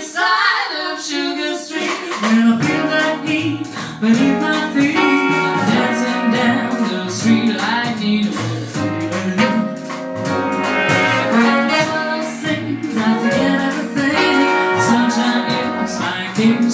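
Big band jazz played live, with brass over piano, bass and drums, and a moving bass line underneath.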